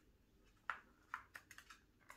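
A Chihuahua puppy's claws clicking lightly on a laminate floor as it scampers about, a quick irregular run of ticks starting a little under a second in.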